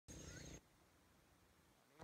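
Near silence: a faint half-second of outdoor background with a thin, high, steady tone at the start, then dead silence.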